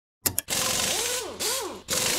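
Digital glitch sound effect: two sharp clicks, then a hiss of static with warbling tones that swoop up and down about twice a second.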